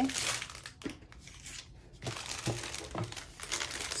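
Plastic packaging of a bundle of diamond-painting drill bags crinkling and rustling as it is handled. The rustling goes quieter about a second in, then picks up again.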